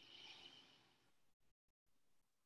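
Near silence: faint room tone, with a soft hiss-like sound in the first second. The audio drops out completely for a moment near the end.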